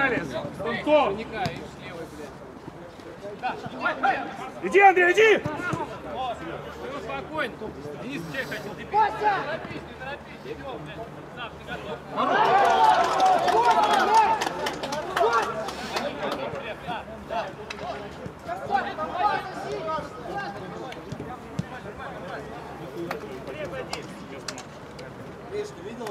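Indistinct shouts and calls of men's voices, with a louder stretch of shouting about halfway through.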